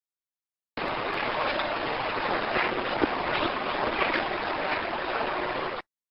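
Background hiss of a voice recording, boosted in editing into a loud, even rushing noise. It starts abruptly just under a second in and cuts off abruptly just before the end.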